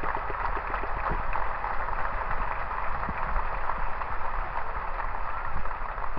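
Stadium crowd applauding steadily, a dense patter of many hands clapping: a minute of applause in tribute.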